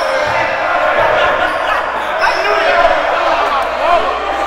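Basketballs bouncing on a hardwood gym floor under the overlapping chatter and laughter of a group of young men.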